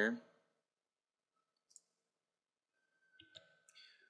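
Computer mouse clicks: one short faint click a little before halfway, then a few soft clicks and knocks near the end, with near silence between.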